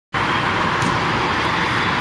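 Steady traffic noise from a town street: an even rush of passing vehicles with no single engine standing out.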